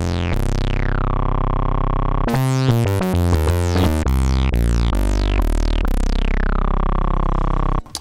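Korg Prologue analog synthesizer playing a funky bass line on a patch of two sawtooth waves through its resonant analog filter with drive on. The filter envelope makes each note open bright and quickly sweep down to a mellower sustained tone. A long held note gives way to a quick run of short notes, then longer notes that cut off just before the end.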